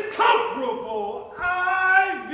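A man's voice calling out in long, gliding, unaccompanied vocal tones, ending on a held note.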